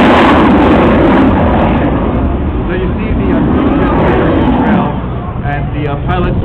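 Rocket engine of a rocket racing plane flying overhead: a loud, even rushing noise that fades away over the first two seconds, leaving a faint public-address voice.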